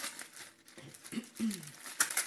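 Thin plastic bag crinkling and crackling as a kitchen knife slits it open on a plastic cutting board. A couple of short, faint falling vocal sounds come in about a second in.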